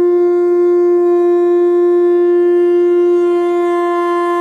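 A conch shell (shankha) blown in one long, loud, steady note.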